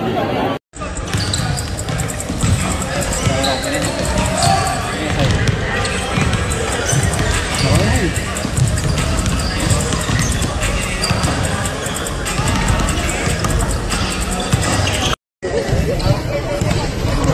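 Several basketballs bouncing and thudding irregularly on a hardwood gym floor during shooting practice, with people's voices talking over them.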